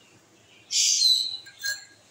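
A bird chirping: one loud, high-pitched call starting about two-thirds of a second in, and a shorter, fainter one near the end.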